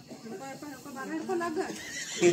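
Indistinct voices of people talking, growing louder toward the end.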